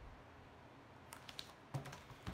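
Faint room tone, then a few light clicks and taps starting about a second in, the last and loudest just before the end.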